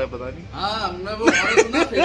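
People talking, with short bursty voice sounds in the second half.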